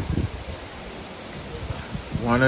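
Steady hiss of rain falling outdoors.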